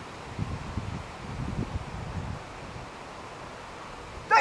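Wind in trees with rustling leaves and low buffeting on the microphone, a few low gusts in the first half.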